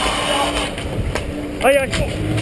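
Wind and movement noise rushing over a helmet-mounted camera's microphone, with a faint knock about a second in. Near the end a player gives a short shout that rises and falls in pitch.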